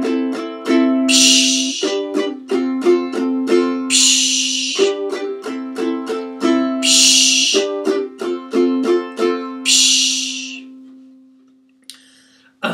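Ukulele strummed in quick, rhythmic chord strokes through a G, A minor and F progression, with a vocal "psh" hiss four times, imitating a crash cymbal. The last chord rings on and fades away near the end.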